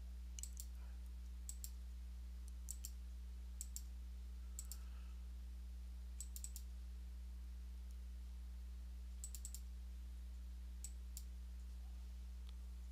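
Faint computer mouse clicks, scattered single clicks and quick double-clicks, over a steady low electrical hum.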